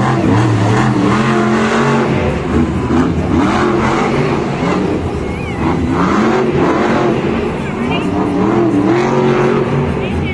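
Stone Crusher monster truck's supercharged V8 running hard through a freestyle run, revving up and down again and again.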